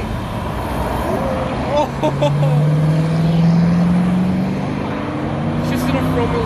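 A car engine held at high revs during a tyre-smoking burnout. Its note comes in strongly about two seconds in and climbs slowly, over a rough, steady rush, with people's voices over it.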